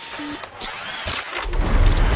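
Designed sound effects for a TV news channel's animated logo ident: quick clicks and sweeping pitch glides over a low rumble that swells toward the end.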